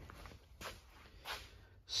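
Faint breathing between sentences: a few soft breaths, the last a quick intake near the end.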